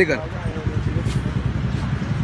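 A motor vehicle engine idling low and steady, under faint street voices.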